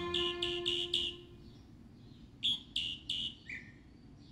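Background music fading out in the first second, with a bird's short high chirps, about four a second, in two bouts; the second bout ends on a single lower note.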